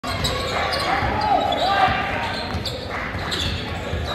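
Basketball being dribbled on a hardwood gym floor, with several sneaker squeaks in the first two seconds and voices from players and spectators echoing in the gym.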